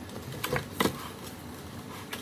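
Two light clicks, about half a second and just under a second in, from a metal spoon knocking against frozen milk cubes in a plastic measuring container as the lye-sprinkled cubes are stirred.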